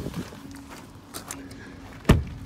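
Soft clicks and handling noise of a person climbing out of an SUV's driver door, with a few quiet steps on gravel, over a faint steady hum.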